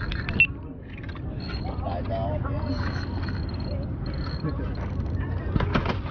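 Steady low rumble of a small boat on open water, with faint background voices and a thin high whine that comes and goes. A sharp knock about half a second in, and a few clicks near the end, come from handling the rod and reel.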